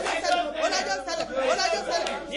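Speech: a woman talking continuously and with force.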